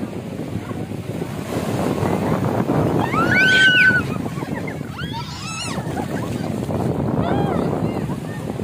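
Small waves washing on the shore and feet splashing through shallow water, with wind on the microphone. A high-pitched voice squeals for about a second, three seconds in, with a few shorter cries later.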